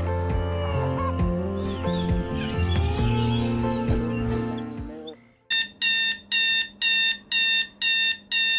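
Background music fades out about five seconds in. Then an Equity digital alarm clock's alarm goes off, beeping in a fast steady pattern of about two high beeps a second.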